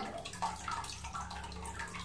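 Faint, scattered drips of water falling from a canister filter's prefilter basket as it is lifted out, with light knocks of its plastic.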